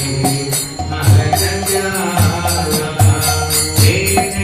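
Devotional chanting to music, with a drum and small hand cymbals keeping a quick, steady beat.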